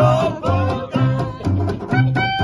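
Small acoustic jazz band playing an upbeat swing tune: trombone and clarinet over guitar, with a plucked double bass keeping a steady beat of about two notes a second.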